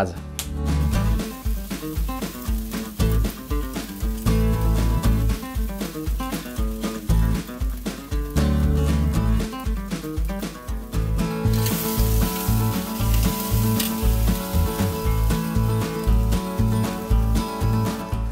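A ribeye steak searing on a grill grate over hot charcoal, sizzling, in the final high-heat sear of a reverse sear. The hiss is strongest for a few seconds just past the middle. Background music with a steady beat runs throughout.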